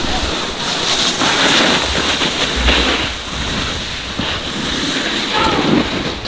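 Rushing wind on the microphone and a snowboard scraping over packed snow as a rider goes down the slope, a steady noise with a low rumble beneath it.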